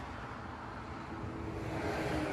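Steady low vehicle engine rumble, with a steady hum coming in about halfway and growing slightly louder.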